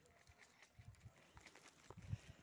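Near silence with a few faint, scattered ticks and scuffs.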